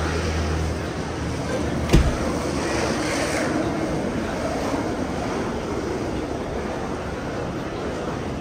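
City street noise with the rumble of traffic. A low engine hum cuts off at a sharp knock about two seconds in.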